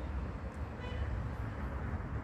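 Street traffic noise, a steady low rumble, with a brief faint car horn toot about a second in.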